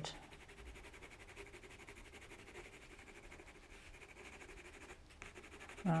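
Faint, steady scratching of an Inktense water-soluble ink pencil shading lightly on textured watercolour paper.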